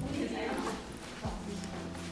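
Footsteps on a hard indoor floor while walking, with low bumps from the handheld camera and people talking in the background.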